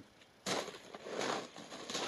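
Soft, irregular crunching of footsteps on a gravel driveway, starting about half a second in.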